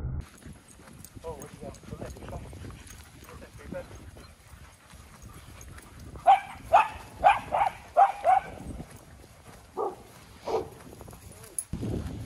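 Dogs barking: a quick run of about seven sharp barks starting about six seconds in, then two more a little later, with fainter barks and yips before.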